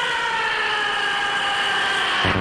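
Breakdown of a trance track: a held, siren-like synthesizer tone slides slowly downward in pitch, with no drums or bass under it.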